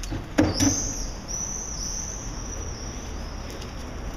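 Two quick knocks about half a second in, then an animal's high-pitched chirping, repeating about twice a second.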